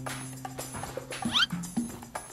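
Sitcom background music with light short notes over a steady low tone, and a short rising squeak of a sound effect about a second and a quarter in.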